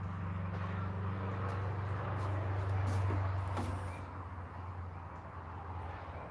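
Low droning motor hum that swells to its loudest about three seconds in and then eases, with a couple of light knocks.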